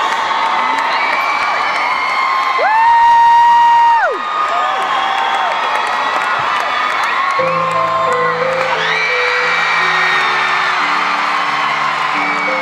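Concert crowd screaming and cheering, with one loud, high scream held for about a second and a half early on. About seven seconds in, slow held keyboard chords begin under the crowd noise.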